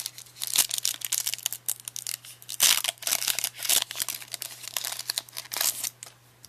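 Foil wrapper of a Pokémon Gym Challenge booster pack being torn open by hand, with irregular crackling and crinkling and the loudest bursts about halfway through and just before the end.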